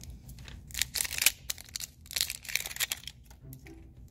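Thin plastic crinkling and rustling in irregular bursts, strongest about a second in and again a little after two seconds, with small plastic clicks as a plastic blind-box baby bottle is handled and opened and the wrapped toy inside is reached for.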